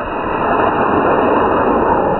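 Clustered Estes-type E12-4 black-powder model rocket motors firing at liftoff, a loud, steady rushing roar of thrust.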